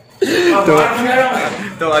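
A man's voice, talking or vocalising without clear words, starting after a brief silent gap.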